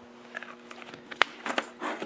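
Light handling clicks and taps of objects moved on a table as a plastic lid is put back on a grease tin and a small metal grease gun is picked up, with one sharp click about a second in.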